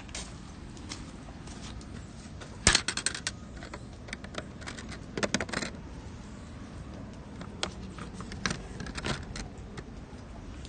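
Short clusters of small clicks and rattles over a steady low background noise. The loudest cluster comes about three seconds in, a second one around five seconds, and single clicks near the end.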